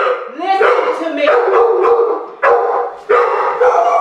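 A dog barking repeatedly, about five loud barks spread over a few seconds.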